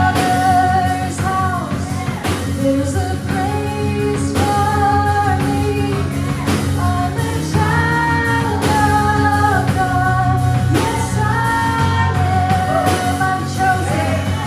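Live worship band playing a song: a woman sings lead over drum kit and electric guitar.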